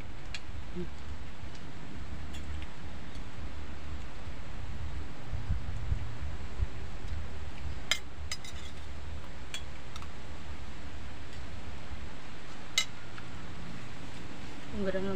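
Spoons clinking against plates a few times as two people eat, with the clearest clinks about eight seconds in and near the end, over a steady low rumble.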